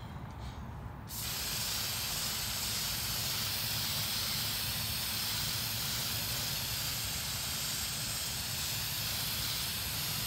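Aerosol hairspray can spraying in one long, steady hiss that starts suddenly about a second in, misting a charcoal drawing as a fixative.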